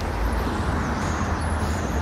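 Road traffic noise from passing cars: a steady rush with a heavy low rumble.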